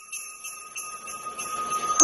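Jingle bells ringing in a steady rhythm of about three shakes a second, with a haze of noise that swells toward the end.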